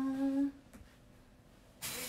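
A young woman humming a held note that stops about half a second in; near the end a sudden crinkling of packaging starts.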